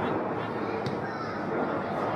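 Open-air field ambience at a football pitch: a steady hiss with faint distant voices from the players, and a single sharp knock a little under a second in as the corner kick is struck.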